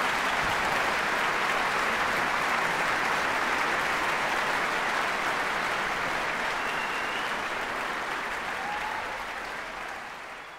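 Large concert-hall audience applauding, a dense, steady mass of clapping that begins to fade over the last couple of seconds.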